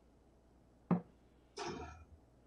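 A soft-tip dart striking a TRiNiDAD electronic dartboard with a sharp, short impact about a second in. About half a second later comes a brief electronic tone from the board as it registers the hit, a single 20.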